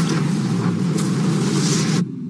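Loud, sustained rumbling blast of an explosion sound effect, with a sharp crack about a second in, cut off abruptly at the end.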